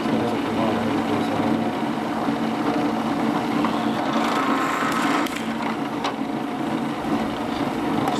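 Bench drill press running steadily, its bit drilling rivet holes through layered Kydex sheet into a wooden backer block: a motor hum under a continuous cutting noise that stops abruptly at the end.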